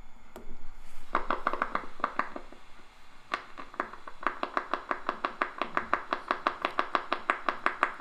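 Needle EMG audio monitor playing a motor unit firing in the tibialis anterior muscle, heard as a train of sharp clicks. The clicks start about a second in, irregular at first, then settle into a fast, even rhythm.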